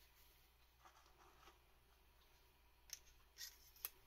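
Quiet handling of small suspension-fork parts by gloved hands: faint rustling, then three short light clicks in the last second and a half as washers and the spring-wrapped damper cartridge are picked up and set down.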